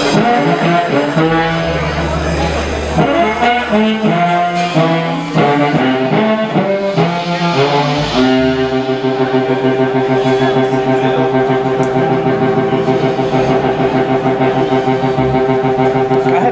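Live electric blues band playing: amplified harmonica blown into a hand-held microphone, over drums, keyboards, guitar and a horn section. About halfway through the band settles into a long held chord over a steady pulsing beat.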